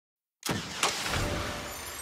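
After a short silence, a sudden rushing noise starts about half a second in, with a second sharp hit a little later, then slowly fades: an edited-in whoosh sound effect.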